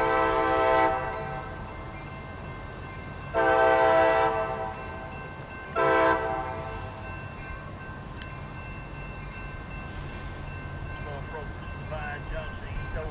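Diesel locomotive air horn, a chord of several tones, sounding the grade-crossing signal: two long blasts, a short one, then a long one held more quietly to the end, over a low engine rumble. The horn is on the lead of a pair of CSX GP40-2 locomotives approaching.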